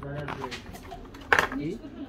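Low voices and one sharp knock a little past the middle: a hard object set down on a glass counter.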